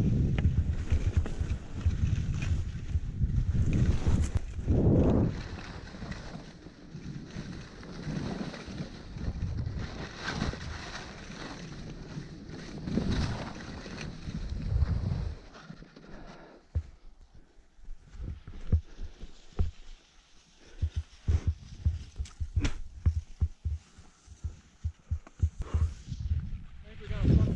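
Skis sliding and scraping over snow on a downhill run, with wind rushing over the camera microphone. The rushing is loud for roughly the first half and then drops away, leaving short scrapes and clicks of the skis on the snow.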